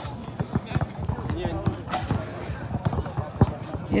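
Several basketballs bouncing on an outdoor court during a pre-game warm-up: an irregular run of sharp thuds from more than one ball at once, over background chatter.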